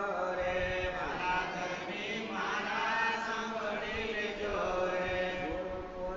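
Devotional chanting by voices, a continuous melodic chant with long held notes that glide up and down.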